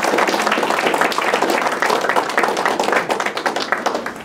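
Audience applauding: many hands clapping densely, thinning a little near the end.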